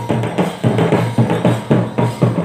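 Traditional Santali barrel drums, hand-played drums with a stick-beaten drum among them, playing a fast, driving dance rhythm of about four to five strokes a second.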